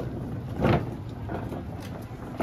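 Wheeled utility cart rolling over concrete, its wheels rumbling steadily, with irregular knocks and rattles from the cart and the cans and jugs loaded on it. The loudest knock comes a little under a second in.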